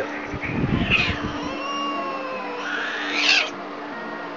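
Domestic cat giving a long, drawn-out yowl, with a short hissing burst about a second in and another near the end. These are the sounds of an annoyed cat resisting being picked up.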